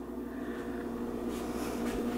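A steady low hum with several faint held tones and light hiss: room background.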